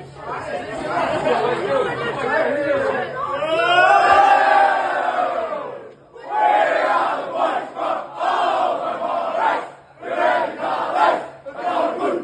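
A team of young men and boys huddled together singing and shouting their team song in unison, with a long held cry about four seconds in and brief breaks near six and ten seconds.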